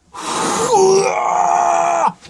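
A man's long, loud groan of strain as he squeezes his body through a tight cave crawlway. It starts as a rough, breathy push and then holds on one steady pitch for over a second.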